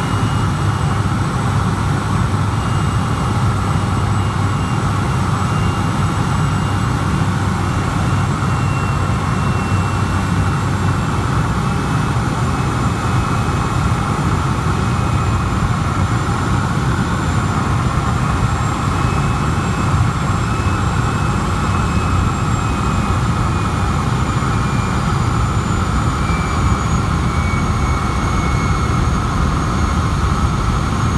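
A Turbo Beaver floatplane's PT6 turboprop engine and propeller heard from inside the cockpit during the landing approach to a lake. It makes a loud, steady drone with a high whine that slowly drops in pitch.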